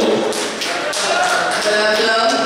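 An indistinct voice mixed with irregular sharp taps and thuds.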